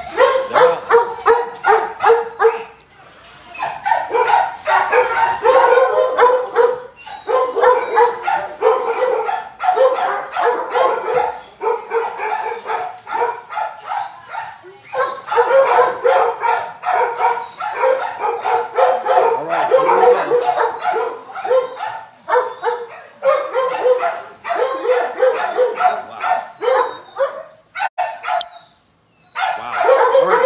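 Several dogs barking hard and fast, several barks a second, breaking off briefly now and then and stopping for a moment near the end.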